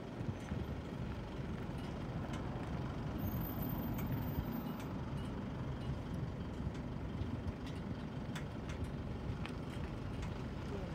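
Road traffic: a steady low rumble of passing vehicles, swelling slightly a few seconds in.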